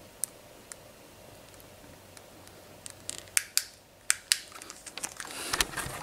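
Quiet room tone broken by scattered sharp clicks and taps, a couple early on and then a denser run from about halfway through: handling noise from fingers and grip on a handheld camera.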